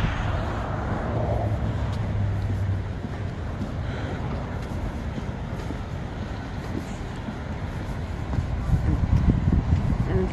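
Steady outdoor ambient roar at the coast, an even low rumble without distinct events, a little louder in the first few seconds.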